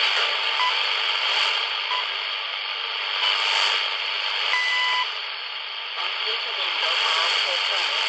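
Shortwave broadcast of Radio Farda on 9815 kHz through a cheap portable world-band receiver's small speaker. It is a steady hiss of static with weak speech beneath it, and a few short beeping tones.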